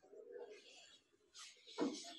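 Faint low cooing, like a pigeon's, then a knock and some rustling near the end.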